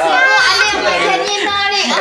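Several excited voices, a child's among them, talking loudly over one another.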